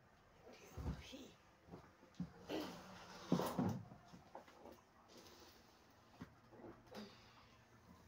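Plastic top panel and casing of a top-loading washing machine knocking and rattling as it is lifted and handled, a few separate knocks, the loudest a little after three seconds in.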